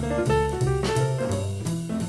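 Jazz piano trio playing at a moderate tempo: piano notes over a double bass that moves to a new note about three times a second, with drum kit and cymbal strokes.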